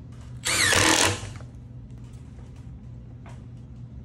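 Cordless Makita impact driver driving a 1-1/4-inch hex-head timber screw through a steel joist hanger into a wooden joist: one short run about half a second in, lasting under a second, its whine falling in pitch as it works.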